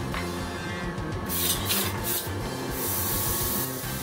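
Airbrush spraying in three short hissing bursts, the last about a second long, starting a little over a second in, over background music.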